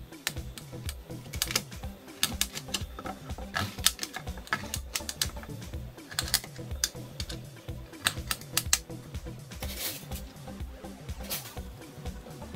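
Kitchen knife chopping a celeriac on a cutting board: a run of sharp knocks, often several a second, coming in uneven bursts.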